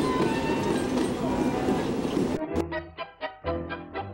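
Commuter train running past the platform, a steady rush of wheel and motor noise. About two and a half seconds in it cuts off abruptly, and string music with short, evenly paced notes, about two a second, takes over.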